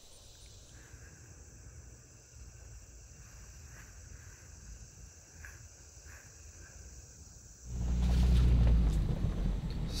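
Faint, steady chirring of crickets or other insects. About three-quarters of the way through, a loud, low rumble cuts in suddenly, heard inside a pickup truck's cab.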